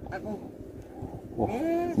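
A man's drawn-out, excited exclamation ("wah") with a laugh in the second half, over faint background noise.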